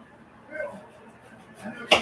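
A woman's voice faintly, then a single sharp knock near the end.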